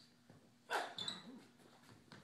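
Scuffling in a staged fight: a sudden loud scrape about three-quarters of a second in, short high shoe squeaks on a hard floor around a second in, and a brief grunt-like vocal sound.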